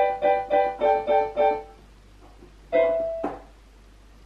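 Digital piano keyboard being played. Repeated chords sound about three a second, with the chord changing about a second in. The playing stops near halfway, then a single chord is held briefly near the end.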